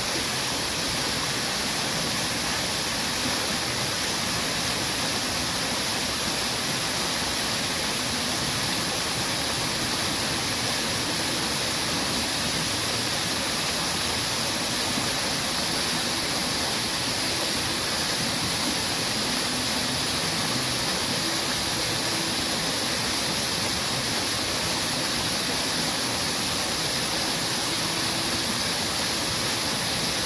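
Garden fountain: several tall water jets splashing steadily into a pool, a constant even rush of falling water.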